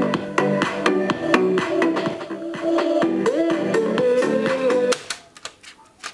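Music with guitar playing back from a cassette on a Silvia New Wave 7007 radio-cassette recorder during a test after its motor service and belt replacement. It cuts off suddenly about five seconds in, followed by a few sharp clicks from the deck's keys.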